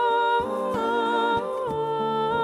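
A woman singing long held notes that step from pitch to pitch, over strummed acoustic guitar.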